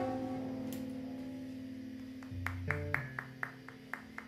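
A live band's last held chord of guitars and keyboards ringing out and fading away at the end of a song. About halfway through, a few low notes come in with light clicks evenly spaced about four a second.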